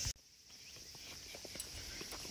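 Faint footsteps on stone paving, a few soft irregular taps, over a faint steady chirring of insects.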